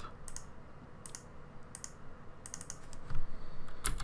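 Typing on a computer keyboard: a few separate keystrokes, then a quick run of several, as a stock name is entered into a website's search box.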